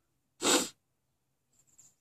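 A single loud, short sneeze about half a second in.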